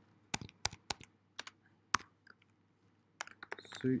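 Computer keyboard keystrokes while typing code: irregular, separate key clicks, a dozen or so, with a pause in the middle.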